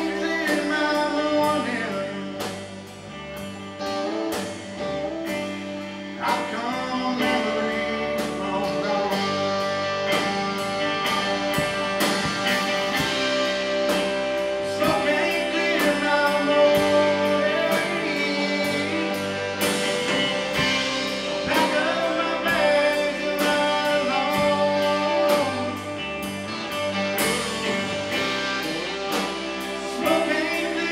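Live band playing: a male lead vocal over two electric guitars, bass guitar and a drum kit, with a steady drum beat throughout.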